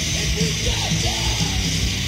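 Hardcore punk band playing: distorted electric guitar, bass and pounding drums under a shouted vocal.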